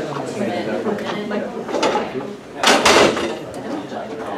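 Indistinct chatter of several people in a room. About two and a half seconds in there is a brief loud noise, the loudest sound here.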